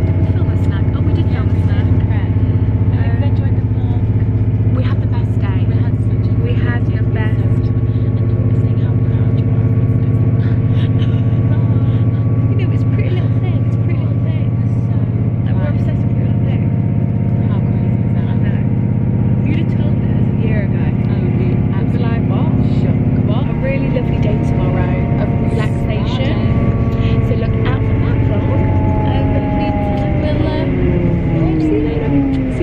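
Train running, heard from inside the carriage: a loud, steady low hum with several held tones that drop in pitch near the end as the train slows. Voices are faintly heard over it.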